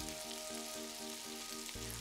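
Cornstarch-dredged dorado fillets frying in shallow oil in a pan, giving a steady sizzle. Soft background music with an even pulse plays under it.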